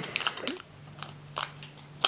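Scissors cutting through the foil wrapper of a trading-card booster pack: a quick run of crisp, crunchy snips in the first half-second, then a few fainter snips and rustles of the wrapper.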